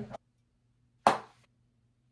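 Near silence, broken about a second in by a single short, sharp tap that dies away quickly.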